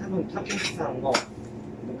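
Tableware clinking at a meal: two sharp clinks, about half a second and just over a second in, over low voices.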